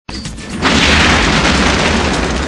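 A loud rush of noise with a deep rumble underneath, starting suddenly about half a second in and holding steady.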